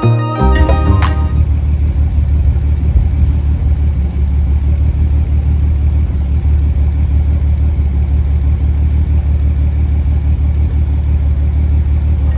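Nissan 300ZX (Z32) twin-turbo VG30DETT V6 idling at about 700 rpm with a lumpy, uneven idle, the sign of low compression (30 psi) in cylinder number 5. Background music cuts off about a second in.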